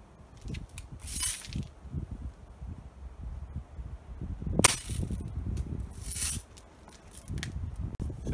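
A single shot from a Daisy Red Ryder spring BB gun, a short sharp snap a little past halfway, as the zinc-plated BB strikes the leather jacket. Two brief hissing rasps come about a second in and about six seconds in, over low rumbling.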